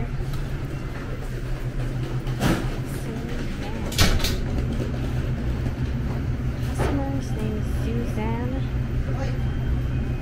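Pizza shop interior ambience: a steady low hum, a few sharp knocks (the loudest about four seconds in), and faint voices of staff near the end.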